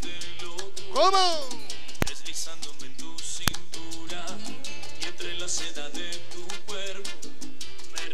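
Salsa music playing: the instrumental intro of a recorded salsa song, with a steady beat. About a second in, a short tone sweeps up and back down, and two sharp clicks sound near the two- and three-and-a-half-second marks.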